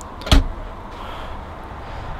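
The door of a Dometic fridge freezer in a campervan kitchen being pushed shut, closing with a single sharp thud about a third of a second in.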